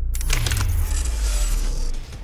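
Edited transition sound effect. A sudden hit carries a metallic jingling shimmer above it and a low boom that slides down in pitch, and it cuts off abruptly at the end.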